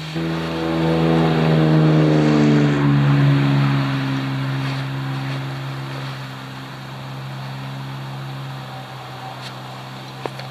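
A motor vehicle's engine droning as it passes: its pitch slowly sinks while it grows louder over the first few seconds, then it gradually fades.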